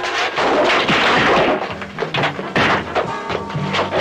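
Film soundtrack music mixed with a run of thumps and knocks, with a louder noisy crash-like swell about a second in.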